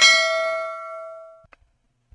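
Notification-bell 'ding' sound effect from an animated subscribe overlay: a single bell strike that rings out with several tones and fades away over about a second and a half, followed by a faint click.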